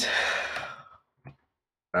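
A person's breathy exhale, like a sigh, fading out over about a second, followed by a brief faint sound and then silence.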